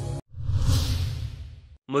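A whoosh transition sound effect with a deep rumble under it, swelling about half a second in and fading away over the next second. Bumper music cuts off just before it.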